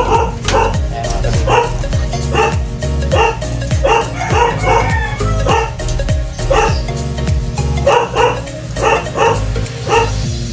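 Background music with a steady beat of deep thumps about twice a second, with dog-bark-like sounds repeating in time with it.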